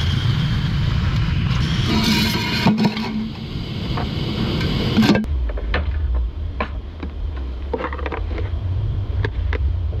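MSR Reactor gas canister stove lit and burning with a steady hiss, with a few sharp clicks. About five seconds in the hiss gives way to a steady low rumble with scattered small ticks.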